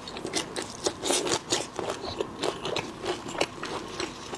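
Close-miked eating of soy-sauce-marinated raw shrimp: sucking and chewing the soft flesh with many irregular sharp wet clicks and smacks. Near the end, hands pull a whole shrimp apart, its shell cracking.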